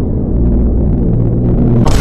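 A loud, heavily distorted low rumble with a steady droning hum, a jump-scare meme sound effect.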